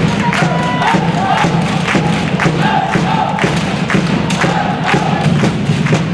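Handball crowd chanting together to a steady drumbeat of about two thumps a second, with cheering mixed in.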